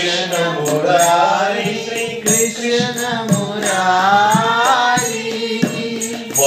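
Devotional Krishna bhajan: a man sings a long, drawn-out melodic line. A mridanga drum and high, crisp clicks keep a steady beat underneath.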